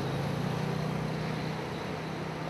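A motor vehicle's engine running nearby in street traffic, a steady low hum over a broad hiss.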